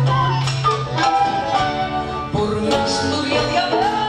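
Live Latin American popular-music band playing: bandoneón, acoustic guitar, piano, double bass, winds and drums together. A woman's singing voice comes in near the end.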